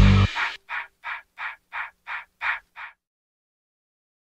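Music cuts off just after the start, then a crow caws six times in quick, even succession, about three caws a second.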